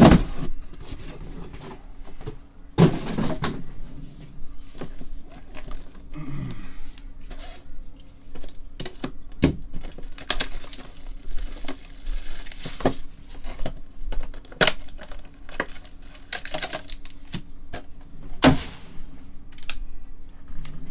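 A trading-card hobby box being opened and its foil-wrapped packs handled and set down in a stack: cardboard and foil rustling with a run of light taps and knocks, and a few louder thumps, one right at the start, one about three seconds in and one near the end.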